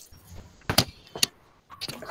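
Two sharp clicks or knocks about half a second apart, with a fainter one near the end, over faint background noise.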